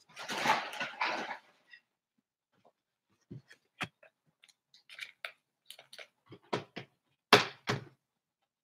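Trading cards and the table being handled: a brief rustle, then a scatter of light taps and clicks, with two louder knocks near the end.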